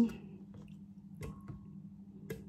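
Two faint, short knocks a little over a second in, as cut lemon pieces drop into a glass blender jar, over a low steady hum.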